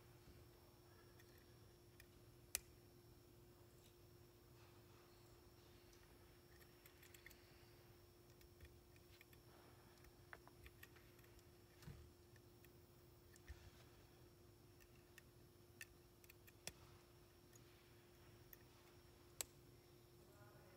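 Near silence over a faint steady hum, broken by scattered small clicks and ticks from hands working the metal chassis and valve gear of an Accucraft Ruby live steam model locomotive during valve timing. One click about two and a half seconds in and another near the end stand out.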